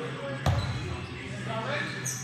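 A basketball bouncing once on the court about half a second in, the loudest sound here, with players' voices in the background.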